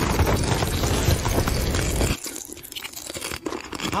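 Loud crackling crunch with a deep rumble for about two seconds, cutting off suddenly, followed by softer scattered crackles and clicks.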